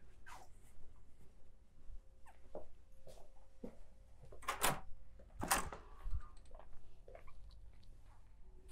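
Footsteps on a hard floor, then two loud clunks about a second apart about halfway through as a door is unlatched and pushed open, over a faint steady hum.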